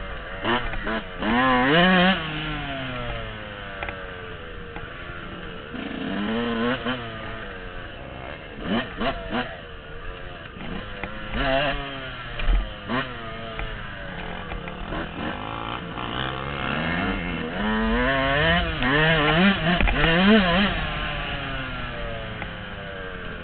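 Yamaha dirt bike engine picked up by the rider's helmet camera, revving up and easing off again and again as it is ridden, the pitch rising and falling with the throttle. There is a sharp knock about halfway through.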